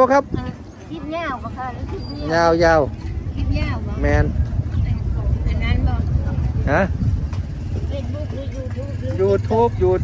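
A few short spoken remarks over a steady low rumble that fills the gaps between the words.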